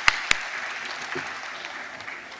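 An audience applauding, fading away over the two seconds. There are two sharp claps close to the microphone in the first moment.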